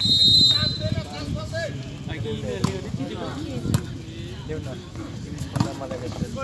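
Volleyball referee's whistle, one steady high blast about a second long, signalling the serve. It is followed by spectators' voices and two sharp ball hits.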